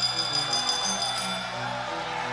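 Background music, with a bell ringing high and fading out about a second and a half in: the bell marking the end of the fight.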